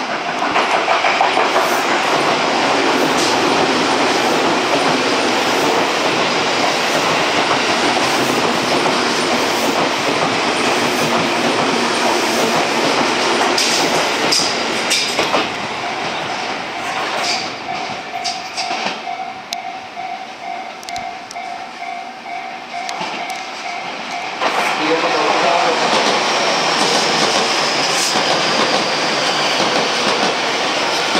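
Electric commuter train running into a station and slowing to a stop, its wheels rumbling on the rails with a few sharp high squeaks as it halts about halfway through. A steady mid-pitched tone then sounds while it stands. Then, after an abrupt cut, another electric train is heard running past close by, its wheels clattering over the rails.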